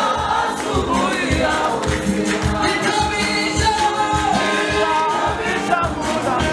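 Gospel choir of mostly male voices singing together, with one lead voice on a microphone, over a steady drumbeat.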